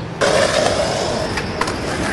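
Skateboard wheels rolling on a concrete sidewalk, starting suddenly a moment in, with a couple of sharp clicks partway through.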